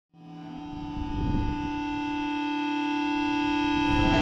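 A sustained drone chord of steady held tones fading in from silence and swelling louder, with a low rumble underneath: an ambient intro before the music begins.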